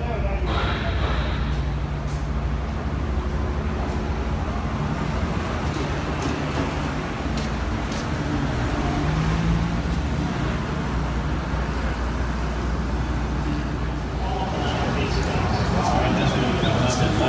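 Steady outdoor background noise: a continuous low rumble with indistinct voices mixed in.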